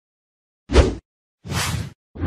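Two whoosh sound effects for an animated logo intro: a short one about two-thirds of a second in, then a longer, airier one just before the end.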